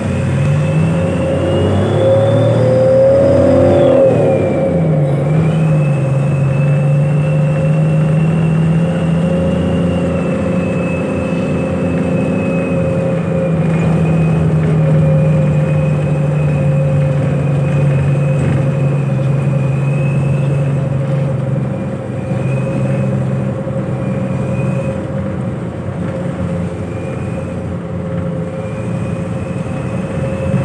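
Bus engine heard from inside the passenger cabin while under way. Its pitch rises over the first few seconds and drops about four seconds in, as at a gear change, then holds fairly steady at cruising speed. A high thin whine follows the engine's pitch throughout.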